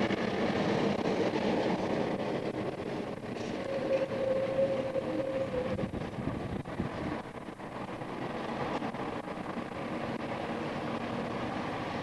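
Steady street traffic noise, a continuous rumble of passing vehicles, with a faint steady engine-like tone for a couple of seconds near the middle.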